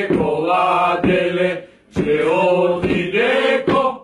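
A group of Bulgarian koledari (male Christmas carolers) singing a koleda carol together in long, drawn-out phrases, with a short break for breath just before the middle.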